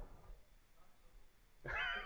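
Near-silent room tone, then about one and a half seconds in a faint, high-pitched, drawn-out voice from an audience member calling out a reply.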